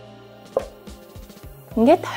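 A wooden lid set onto a wooden bowl: one sharp knock about half a second in, then a few light taps as it is settled.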